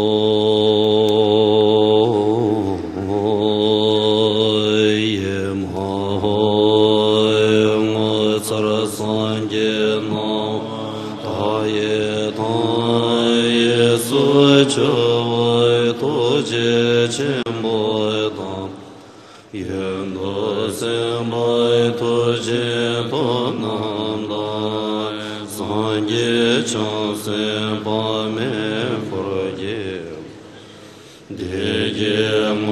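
Tibetan Buddhist monks chanting a prayer in a slow melodic chant with long held notes. The chant breaks off briefly about two-thirds of the way through, then resumes.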